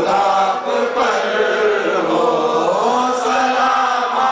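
Devotional chanting: voices holding long notes that bend slowly up and down without a break.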